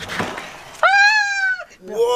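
A door being opened: a click, a brief rustling scrape, then a high, steady squeal lasting just under a second.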